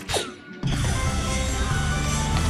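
A dart strikes the electronic soft-tip dartboard with a sharp click and a falling electronic swoosh. About half a second in, the machine's loud award jingle for a 'Low Ton' (a round of 100 or more) begins and runs on steadily.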